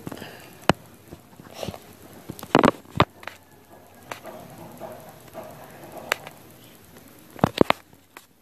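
Light handling of a plastic gel pen over paper: scattered sharp clicks and taps, with a quick cluster of clicks about two and a half seconds in and another near the end.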